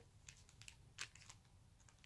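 Near silence, with a few faint light clicks of a clear plastic sleeve handled around a small ornament, the clearest about a second in.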